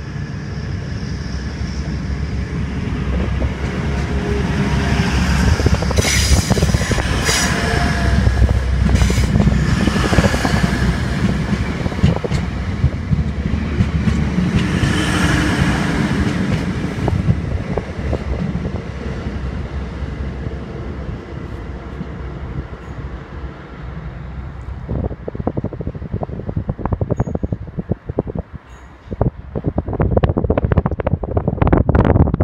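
Class 180 diesel multiple unit pulling out and running close past, its underfloor Cummins diesel engines giving a loud, steady rumble that swells with bursts of hiss as the cars go by. The sound falls away as the train draws off, with crackling wind on the microphone near the end.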